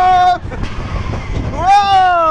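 Riders on a mine-train roller coaster screaming: one long high yell held steady and cut off about half a second in, then another that rises and falls near the end, over the low rumble of the train on the track.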